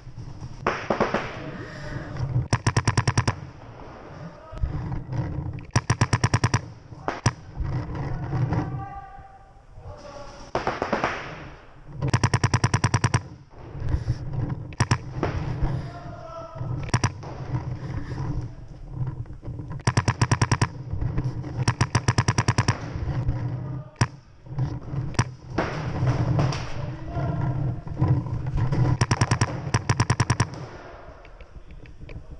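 Paintball markers firing rapid strings of shots, each string lasting about a second and recurring several times, with other shots and faint shouting in between.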